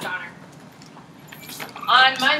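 A woman's voice briefly at the start, then faint scattered metallic clinks, with her speech starting again near the end.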